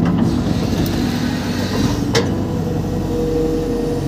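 Hitachi EX120-1 excavator's diesel engine running under digging load as the bucket scoops mud, heard from inside the cab. There is a sharp knock about two seconds in, and a steady whine over the last second or so.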